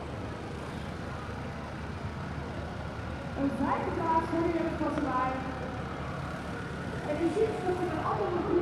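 Compact tractor engine running steadily as it tows a float; from about three and a half seconds in, people's voices join over it.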